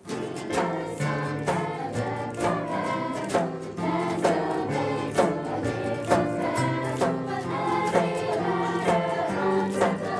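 Children's choir singing to two acoustic guitars, with a steady beat of about two strokes a second. The music starts abruptly at the very beginning.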